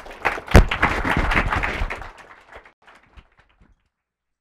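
Audience applauding, with one loud knock about half a second in; the clapping fades over the next couple of seconds and the sound cuts off just before the end.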